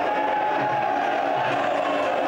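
Stadium crowd letting out one long, drawn-out shout that sinks slowly in pitch, cheering knee strikes thrown in the clinch.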